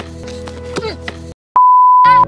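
Background music with a repeating figure cuts off about a second and a half in, and after a brief silence a loud, steady single-pitch electronic beep begins, like a censor bleep or edit-transition tone.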